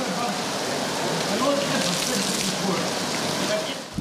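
Heavy rain pouring steadily onto wet ground, with faint voices underneath.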